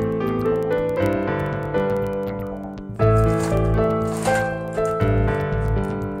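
Background music track: a keyboard melody of held notes over low bass pulses about every two seconds.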